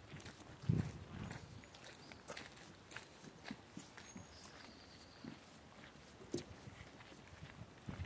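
Faint footsteps of several people walking on wooden boardwalk planks: a few soft, irregular knocks of shoes on the boards.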